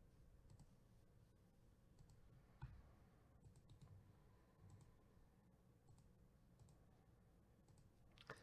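Near silence broken by a handful of faint computer mouse clicks, scattered a second or so apart.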